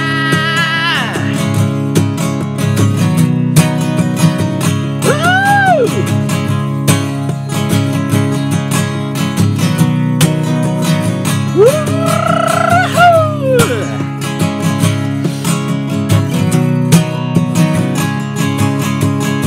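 Acoustic guitar strummed hard and fast in an instrumental passage of a sung pop song, with steady chord strokes throughout.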